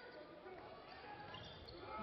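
Faint hits of a volleyball during a rally in an indoor sports hall, as an attack is played off the opposing block, with the hall's crowd noise rising near the end.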